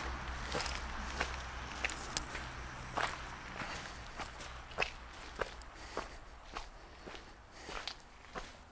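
High-heeled shoes walking: a steady run of sharp clicks, a little under two steps a second, growing fainter toward the end. A low steady hum sits underneath and dies away about halfway through.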